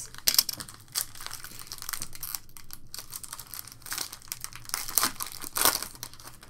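A foil trading card pack being torn open and its wrapper crinkled by hand: a run of sharp crackles and rustles, loudest just after the start and again near the end.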